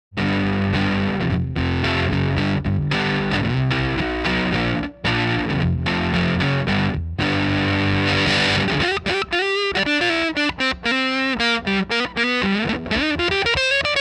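Electric guitar played through a Sola Sound Tone Bender Mk IV germanium fuzz pedal. Heavily fuzzed chords with a few abrupt stops make up the first half, then single-note lead lines with string bends.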